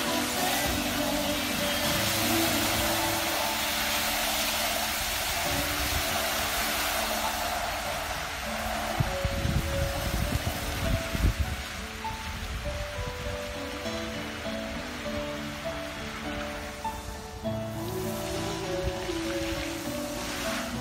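Music playing over a musical fountain, mixed with the steady hiss of spraying water jets. The water's hiss is strongest for the first several seconds and thins out after that, with a few low thumps around the middle.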